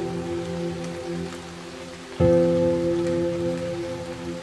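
Slow, calm piano chords over a steady rain recording: one chord fades, then a new chord is struck about two seconds in and rings on under the rain's even hiss.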